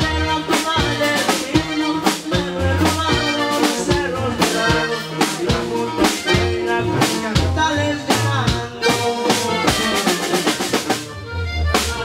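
Live norteño band playing an instrumental passage: accordion melody over a sousaphone bass line, drum kit and bajo sexto. The music drops back briefly near the end and then comes in again.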